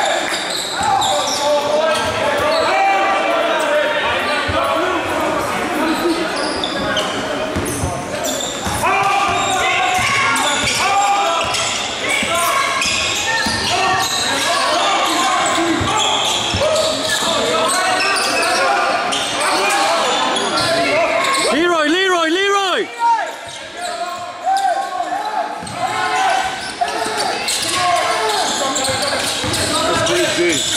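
Basketball game in a gym: a basketball bouncing on the hardwood court under a steady background of crowd and player voices, echoing in the hall. About 22 seconds in, a brief wavering pitched sound rises above the chatter.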